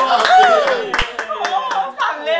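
A few people clapping their hands in scattered claps, with excited voices calling out over them.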